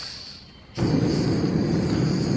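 A backpacking gas canister stove hissing as gas flows from the burner, then the gas lights suddenly a little under a second in and the burner runs on with a loud, steady flame noise.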